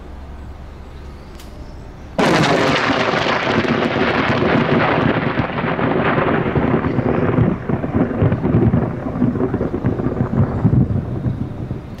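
Very close lightning strike: a short click, then under a second later a sudden, very loud crack of thunder that rolls into a loud, rumbling thunder lasting about eight seconds and easing near the end.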